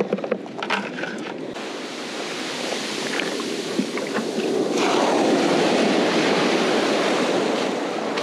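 Shallow surf washing up the beach around the feet, with a wave rushing in and swelling louder about five seconds in. A few short clicks and knocks from handling in the first second or so.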